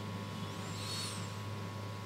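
A pause in speech filled by a steady low hum of studio room tone, with a faint high whistle that rises and falls about a second in.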